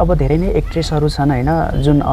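Speech only: a man talking in a steady stream, over a faint low hum.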